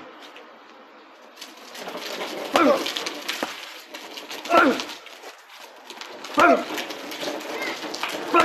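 A dog barking four times, one short bark about every two seconds.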